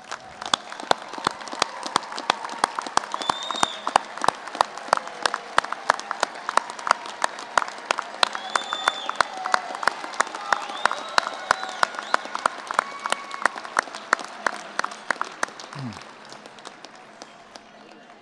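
Large crowd applauding: dense, sharp hand claps over a steady din, with a few voices calling out, starting at once and dying away near the end.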